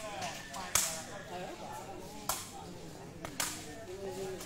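Sepak takraw ball struck by players' feet in a rally: four sharp smacks, one about a second in, one past two seconds and a quick double near the end. Faint crowd chatter runs underneath.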